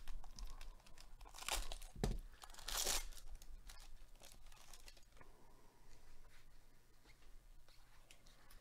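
A jumbo trading-card pack's foil wrapper is torn open by hand: several loud ripping and crinkling sounds in the first three seconds. Then comes a softer rustle as the stack of cards is handled.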